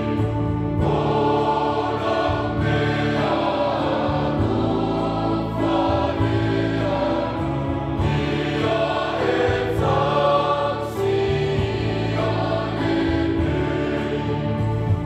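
Mixed church choir singing a Samoan hymn, many voices together holding long notes that change every second or two.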